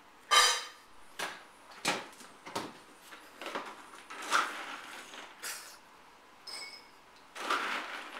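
A series of short clatters and knocks of dishes and metal dog bowls being handled while food is got ready, the loudest right at the start, with a brief metallic ring about six and a half seconds in.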